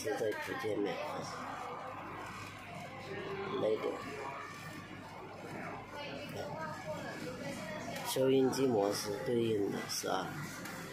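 Talk from an FM radio broadcast playing through the car stereo head unit's speaker, a voice going on with short pauses.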